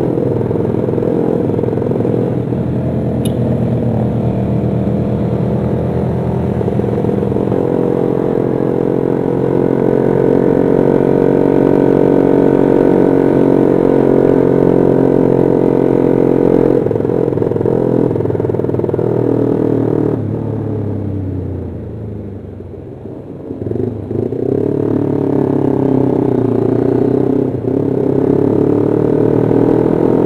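Honda CB150R's single-cylinder engine running under way, heard from the rider's seat, mostly steady at cruise. About two-thirds through, the throttle closes and the engine note falls and quietens for a few seconds, then the bike picks up again with the pitch rising near the end.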